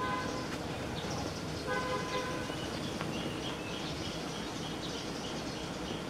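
A vehicle horn honks twice over steady outdoor background noise: a short toot at the start and a longer one about two seconds in. From about halfway through, high, evenly repeated chirps run on.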